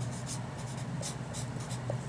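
Felt-tip marker writing on paper: a quick run of short scratchy strokes as a word is written, over a faint steady low hum.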